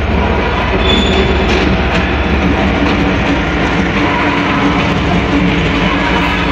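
Diesel-hauled passenger train moving past a station platform: a loud, steady rumble of locomotive engine and rolling coaches, with a faint engine drone joining about two and a half seconds in.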